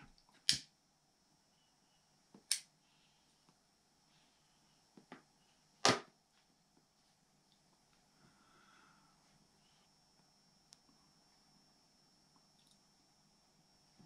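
Mostly quiet, with a few short sharp clicks in the first six seconds, then faint puffing as a man draws on a tobacco pipe.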